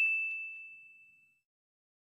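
Notification-bell chime sound effect from a subscribe-button animation: a single high, clear ding ringing out and fading away within about a second.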